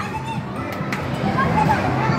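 Busy indoor arcade din: scattered children's voices and chatter over a steady drone of game machines, with no single sound standing out.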